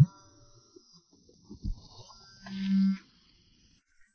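A mobile phone vibrating: a steady low buzz lasting about half a second, a little over two seconds in, announcing an incoming message.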